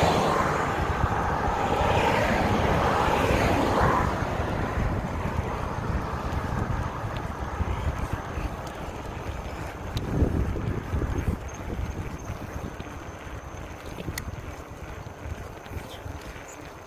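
Wind buffeting a phone's microphone while riding a bike, a steady rumbling rush that is strongest in the first few seconds and slowly eases, with a brief swell about ten seconds in.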